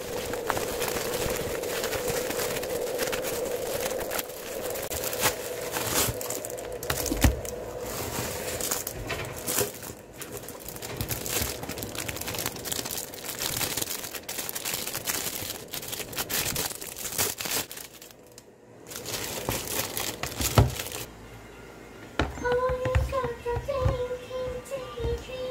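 Plastic packaging crinkling and rustling as hands unwrap a tablet case from its clear plastic sleeve, with a couple of sharper knocks against the desk. Soft background music comes in near the end.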